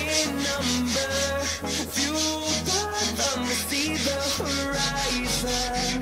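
Background pop song with singing and a steady beat, over back-and-forth rubbing of sandpaper by hand on wooden battens.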